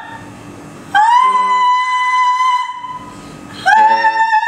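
Operatic soprano singing two long held high notes, sliding up into each one, with piano accompaniment quiet beneath. The first note starts about a second in and is held for nearly two seconds; the second begins near the end.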